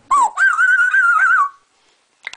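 African grey parrot giving a whistled call: a short note, then a wavering, warbling tone about a second long that drops in pitch at the end.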